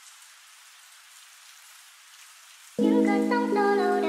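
A faint, steady rain-like hiss. About three quarters of the way through, the next sped-up song starts suddenly and loudly, with sustained low chords under a melody of short, stepping high notes.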